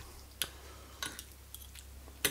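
Knife and fork clicking faintly against a plate twice, about half a second and a second in, while cutting into a fried egg, over a steady low hum.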